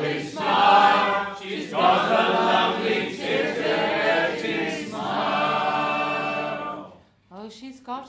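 A roomful of voices singing a music-hall chorus together, unaccompanied or nearly so. The singing breaks off about seven seconds in, and a single voice starts near the end.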